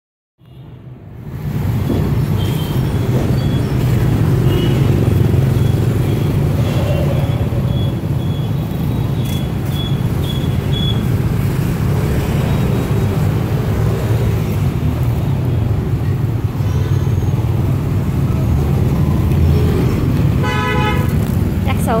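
Street traffic: a steady low rumble of motorbike and car engines going by, with a short horn toot near the end.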